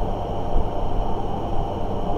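Steady low rumbling background noise with a faint, high, steady whine above it, and no speech.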